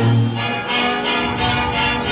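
Live band music with several steady notes held together and a low bass note sounding at the start.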